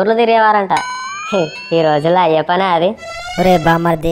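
A voice repeating the same short word over and over in a sing-song chant, with music under it. A rising pitched glide sweeps up about a second in and again near the end.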